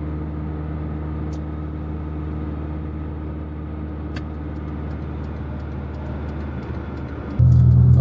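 Engine and road noise inside a Suzuki Escudo's cabin while it is driven at a steady speed: a steady low hum. It becomes suddenly louder near the end.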